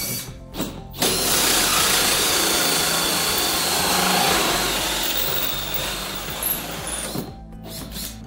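Power drill running in one long burst of about six seconds while the bow rod holders are fitted into the boat's deck, with a short start before it and a stop near the end.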